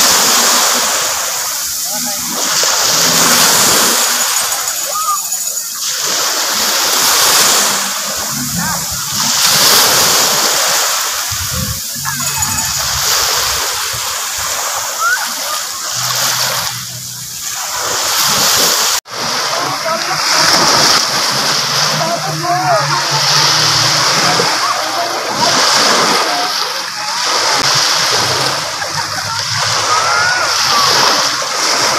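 Small waves breaking and washing up onto a sandy beach, the surf swelling and falling back every few seconds, with a brief break in the sound about two-thirds of the way through.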